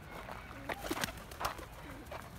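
Pigeon wingbeats: a few sharp wing claps about a second in as a blue tumbler pigeon takes off. The wing sound is there even though the bird's wings are not large.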